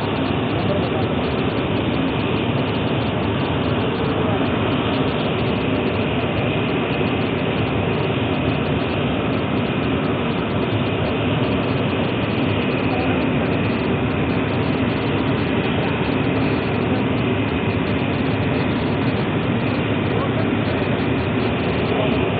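Steady, unchanging mechanical noise, like machinery or engines running, with indistinct voices under it.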